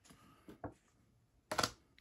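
Faint rustling and light handling of a paper card and box packaging, with a couple of soft ticks about half a second in.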